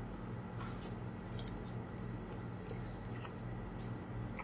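A person taking a spoonful of hot cheesy casserole: faint mouth and chewing sounds and a few small clicks of a metal spoon, over a steady hum.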